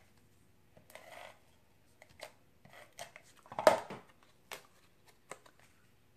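Paper and cardstock handled and pressed down by hand on a card: scattered light rustles and taps, the loudest a little past the middle.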